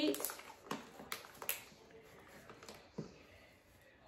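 A kraft-paper treat pouch handled in the hands, giving a few soft, scattered crackles and clicks.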